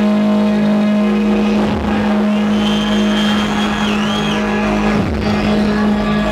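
Dubstep played loud through a club sound system: a held low synth bass note with a rasping, engine-like growl. In the middle a high synth line glides up and wobbles.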